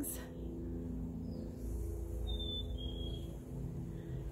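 A faint, steady hum of several held low tones over a low rumble, with a short high whistle near the middle.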